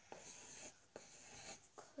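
Faint scratching of a pencil drawing on paper, in a few short strokes with light taps between them.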